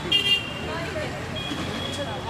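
Street traffic with a vehicle horn sounding briefly and loudly right at the start. A thinner, steady high-pitched horn tone follows in the second half, over background voices.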